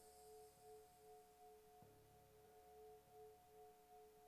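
Near silence with faint held electronic tones, pulsing slightly, from a quiet background music bed.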